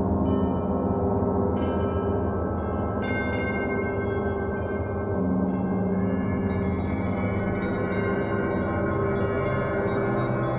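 Large gongs played in a gong bath: a dense, sustained low wash that never dies away, with bright high ringing tones joining in about a second and a half in, again at three seconds, and more around six seconds.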